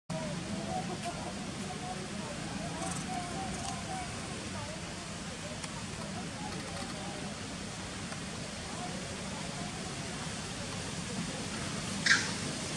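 Steady outdoor background noise, with faint, wavering distant voices in the first half.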